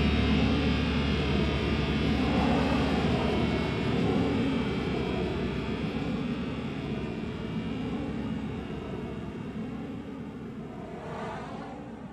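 The final chord of a hard rock song ringing out as a sustained, wavering wash of distorted electric guitar noise that slowly sweeps up and down and fades away.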